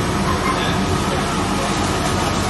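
Steady rush of air from a blower nozzle, its upward jet holding a small ball aloft.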